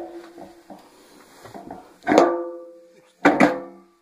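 Stainless steel washing-machine drum of an LG WD10130N knocking against the tub as its shaft is guided into the new bearings. There is one knock about two seconds in and two quick ones just after three seconds, each ringing on briefly with a metallic tone.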